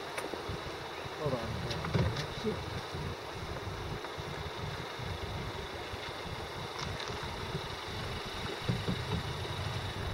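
Car engine idling and creeping forward at low speed, a steady low hum heard from inside the car, with faint voices outside.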